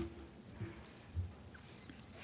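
Quiet room with faint handling noises: a sharp click at the start and a couple of soft thumps, plus faint, short high beeps about once a second.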